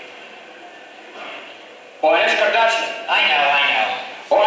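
Film dialogue played over loudspeakers in a hall: a man speaks two short phrases from about two seconds in, after a stretch of faint background.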